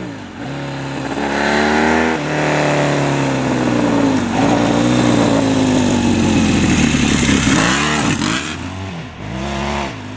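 Yamaha XS650 parallel-twin motorcycle accelerating hard, the revs climbing, dropping at a gear change about two seconds in, then climbing again. It comes close and passes by with the pitch bending down, and dips briefly near the end.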